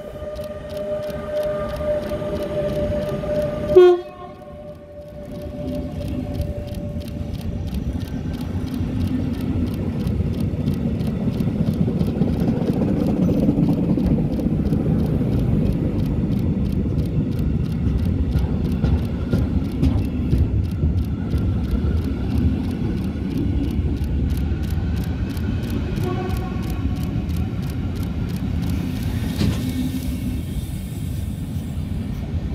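A train arriving at a station platform. A steady horn-like tone sounds for the first few seconds and ends in a short loud blast about four seconds in. Then the rumble of the train rolling in builds and holds steady.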